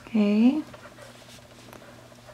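A short wordless vocal sound, like a brief 'mm', lasting about half a second near the start and rising in pitch at its end.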